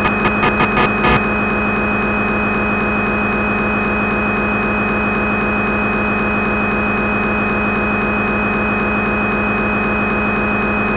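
Simulated CNC lathe running sound from the Swansoft simulator: a steady motor hum with fixed tones. Rapid pulsing runs through the first second, and rapid high ticking comes in about three seconds in and again from about six to eight seconds, while the tool axes are jogged.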